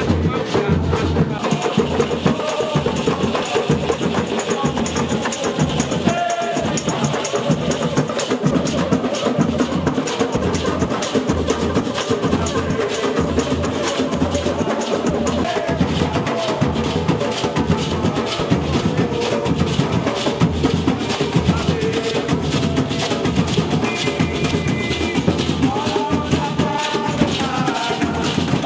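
Batucada street percussion band playing a fast, steady samba-style groove: big bass drums, snare-type drums, hand drums and tambourines, with small guitars strumming along.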